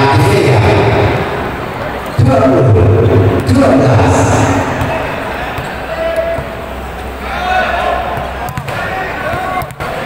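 Spectators in a sports hall during a volleyball match, shouting and cheering together. The crowd suddenly grows louder about two seconds in, eases off in the middle, and a few sharp knocks come near the end.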